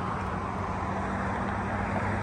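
Steady background hum of vehicle traffic with a low, even drone and no distinct events.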